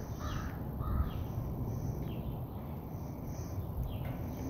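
A bird calling a few times, mostly in the first second, over a steady low outdoor rumble.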